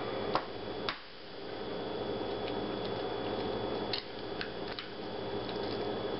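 A raw egg being cracked: two sharp taps of the shell about half a second apart near the start, then a few lighter clicks of the shell breaking around four seconds in, over a steady background hum.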